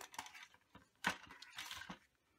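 Plastic paper trimmer being handled and its swing-out ruler arm opened: a few light clicks, a sharp click about a second in, then a short scrape.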